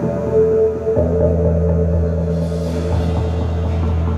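Indoor percussion ensemble's show opening: slow, sustained chords over a steady low held bass note, the chord shifting about a second in, with a brief high shimmer near the middle.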